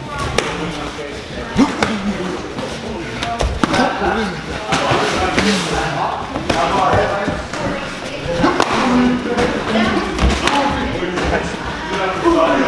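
Muay Thai sparring with boxing gloves: scattered sharp slaps and thuds of punches and kicks landing on gloves and bodies, with indistinct voices underneath.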